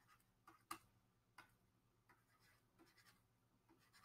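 Near silence with a few faint, sharp clicks, about half a second, three quarters of a second and a second and a half in, and weaker ticks after, as an answer is handwritten on a computer screen.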